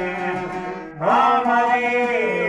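A šargija (long-necked Bosnian lute) and two violins playing traditional Bosnian folk music, with a man singing. The music dips briefly, then a loud new phrase comes in with a rising glide about a second in.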